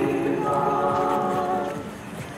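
A group of voices singing Greek Orthodox chant without instruments, in long held notes that die away near the end.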